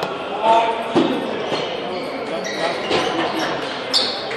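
Busy table tennis hall: a few sharp clicks of celluloid balls striking bats and tables at the surrounding tables, over a steady murmur of people talking.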